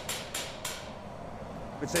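About four short, sharp cracks in the first second as a hot blown-glass bowl is broken off the blowpipe at its cooled break-off point, transferring it onto the punty. A steady low hum from the hot-shop equipment runs underneath.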